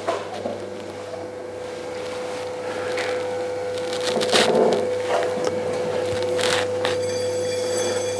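Electric potter's wheel running with a steady whine and low hum, with light scraping and a few soft knocks as the potter's hands and cutting wire work around the base of the bowl on the wheel head.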